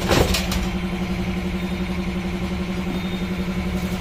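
A steady, low mechanical drone like an idling engine runs throughout. In the first half-second there is a brief clatter and rustle as plastic-wrapped accessories are handled inside a stainless-steel drum.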